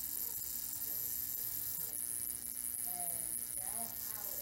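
Steady electrical hum and buzz from a homemade ZVS flyback high-voltage driver powering a glowing test-tube cathode ray tube, with a faint high whine over it.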